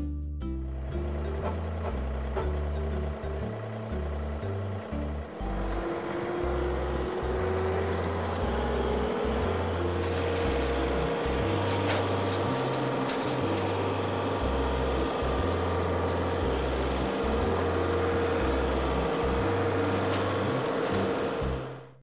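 Background music with a stepping bass line. From about five seconds in, a John Deere 3039R compact diesel tractor and its Rhino TS10 flex-wing rotary cutter are heard running beneath it; a steady hum rises in pitch over a few seconds, then holds. Everything fades out at the very end.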